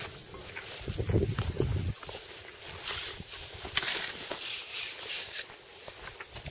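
Footsteps brushing through tall grass as people walk across a field, with a gust of wind rumbling on the microphone about a second in.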